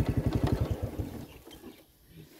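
A small engine running with a rapid, even low putter, fading away over the first second.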